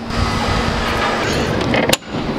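Steady rushing noise with a heavy low rumble, and one sharp click just before the end.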